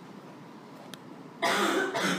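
A person coughing: a sudden, loud, harsh cough about one and a half seconds in, after a stretch of faint room noise.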